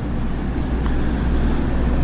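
Steady low rumbling background noise with a hiss above it and no speech.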